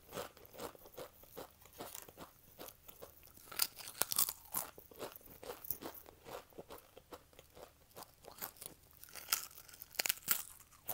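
Close-up crunching and chewing of ridged Pringles Wavy potato crisps: a steady run of crisp crackles, loudest about four seconds in and again near the end.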